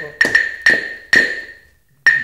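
End of an intro music track: the didgeridoo drone stops, leaving four sharp wooden percussion strikes in the first second or so, each ringing briefly and dying away, with one more strike at the very end.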